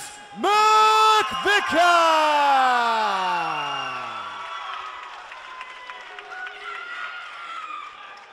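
A ring announcer on a PA microphone calls out a fighter's surname in one long, drawn-out cry. The cry falls slowly in pitch and dies away in the hall's echo. Crowd cheering and applause follow.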